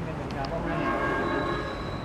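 A horn sounds once: a steady blast of several notes held together for about a second, starting about half a second in.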